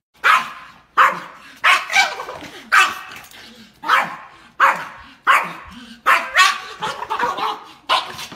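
A small shaggy dog barking over and over at a squirrel on the other side of a glass door: a steady string of about a dozen sharp, high barks, each less than a second apart.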